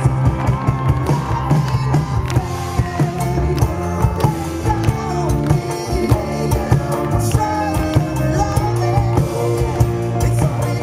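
Live rock band playing: electric guitar, keyboard and a drum kit beating a steady rhythm, with a man singing over them.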